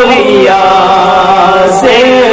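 A man's solo voice chanting a naat in long, drawn-out held notes, with a brief hiss of a consonant near the end.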